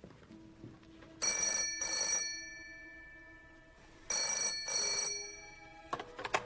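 Telephone bell ringing twice, each ring a double burr of two short pulses about three seconds apart, the call that is answered just afterwards. A low note is held underneath.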